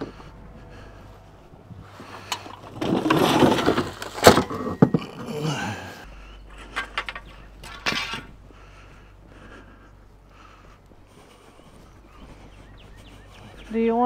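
Steel T-posts and a T-post driver clanking and rattling against each other as they are handled out of a UTV's cargo bed, loudest with a run of sharp metal knocks a few seconds in, then scattered lighter clinks.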